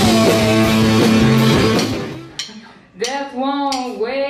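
A live rock band, with electric guitar, bass guitar and drums, playing, fading out about two seconds in; about three seconds in a single wavering, sustained note begins.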